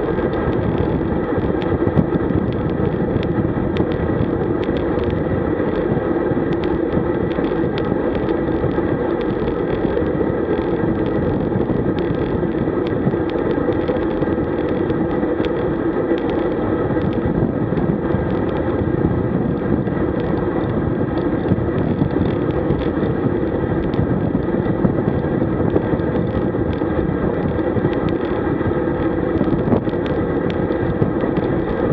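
Steady wind rush and tyre-on-road noise on a camera riding on a road bike at about 36 km/h, with faint scattered ticks and rattles.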